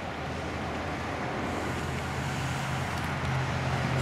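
Steady outdoor road-traffic noise: a low engine hum under a broad hiss, growing slightly louder toward the end.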